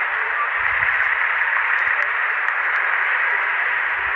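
Steady, even static hiss, like an untuned radio, holding at one level throughout.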